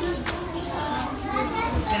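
Several people talking and calling out, children's voices among them.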